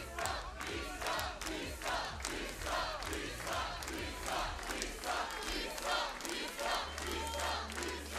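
Concert audience clapping in a steady rhythm, about three claps a second, with many voices shouting and cheering.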